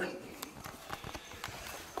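Soft, irregular knocks and scuffs of movement, several a second: footsteps on the shop floor and handling noise from a handheld camera being swung around.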